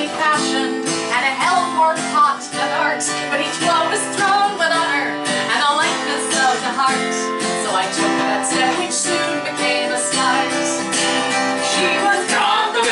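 A folk song: steadily strummed acoustic guitar with a woman's singing voice carrying the melody over it.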